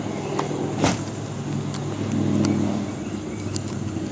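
Steady low mechanical hum, like a motor running, that swells a little about two seconds in, with a light knock a little under a second in while the camera is being moved.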